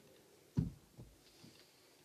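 A dull low thump about half a second in, followed by two fainter ones, against quiet room tone.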